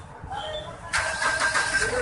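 A car engine cranking and starting, coming in suddenly about a second in.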